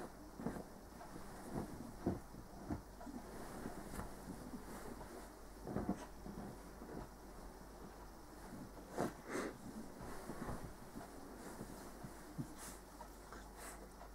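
A small dog burrowing under a duvet on a bed: faint rustling of the bedding in short, irregular scuffles, loudest around six seconds in and again around nine seconds in.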